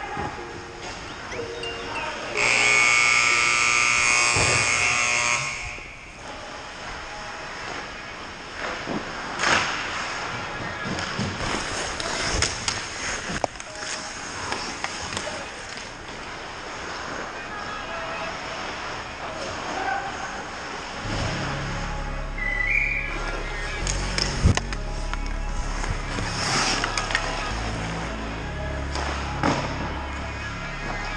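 Ice hockey game sounds in a rink: skating, with sharp clacks of sticks and puck on the ice and boards, and voices in the background. A loud, steady horn sounds about two seconds in and lasts about three seconds; it is the end-of-period horn. Music with a low, steady pulse comes in about twenty seconds in.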